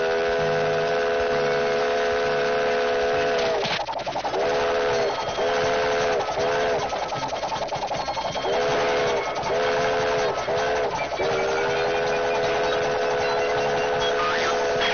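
A multi-note whistle in the manner of a steam whistle, cartoon sound effect, sounding as one chord. It gives one long blast of about four seconds, then three short toots, a brief gap, three more short toots, and then another long blast of about four seconds.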